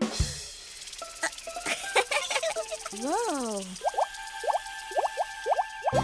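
Cartoon sound effects over light music: a hiss with a few clicks, a rising-then-falling whistle-like glide about three seconds in, then a quick run of short upward blips.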